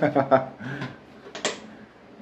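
Low voices trailing off, then scattered handling noise and one short, sharp click-like sound about a second and a half in, as a small kitchen appliance is handled on a counter.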